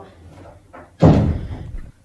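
A door slamming shut about a second in, a single heavy impact with a short ringing tail.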